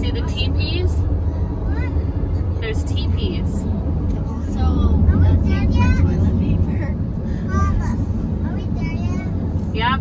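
Steady road and engine rumble inside a car driving at highway speed, with high-pitched voices talking and calling out now and then.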